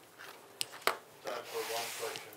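Two sharp clicks, then a rubbing, rustling handling noise with faint voices beneath it.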